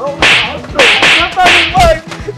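Three loud slap-like hits land in a scuffle, about half a second apart, each a sharp crack with a short swish. A man's short cries come between them.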